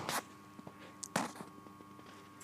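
Quiet room tone with a faint steady hum, broken by two brief knocks or rustles about a second apart, like handling noise.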